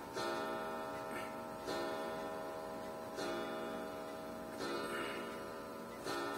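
A chiming clock striking the hour: single ringing strokes about a second and a half apart, four of them here, each dying away before the next.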